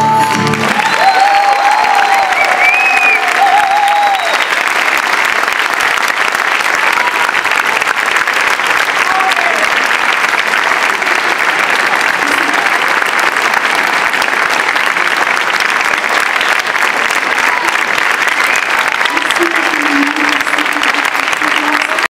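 The ensemble's last note ends within the first second, and a large audience breaks into steady applause that runs on, with a few voices cheering over it in the first few seconds.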